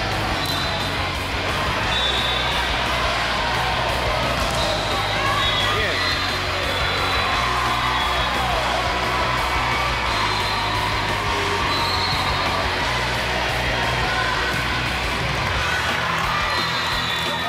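Indoor volleyball match sound in a large echoing hall: a steady mix of crowd voices and cheering, the ball being struck, and music playing throughout.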